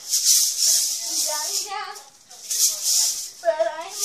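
A girl singing a slow tune with a spinning hula hoop, which makes a rattling swish that comes and goes with each turn.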